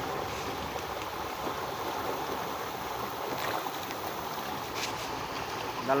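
Steady rushing of a river's current, with a couple of faint clicks in the second half.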